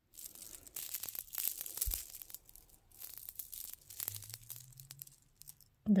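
Handling noise from a chunky gold-tone chain bracelet with white beads and gold charms: the links and beads rattle and click together with scratchy rustling as it is turned in the hand and put on a wrist, in uneven bursts that die down near the end.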